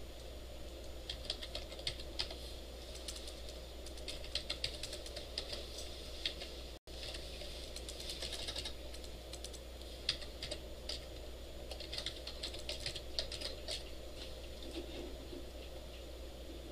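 Typing on a computer keyboard: several short runs of keystrokes with pauses between them, over a steady low hum. The sound cuts out for an instant about seven seconds in.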